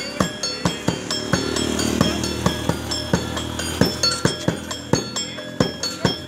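Live street-show percussion: a drum beaten in a quick, even rhythm of about three strokes a second, with ringing metal percussion clanging over it. A steady low hum runs underneath for a couple of seconds in the middle.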